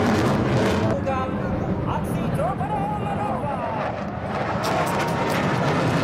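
Steady roar of a jet aircraft flying over, easing slightly partway through and building again, with faint crowd voices underneath.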